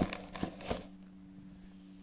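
A couple of light taps and rustles from a cardboard chocolate box being handled, over a steady low hum.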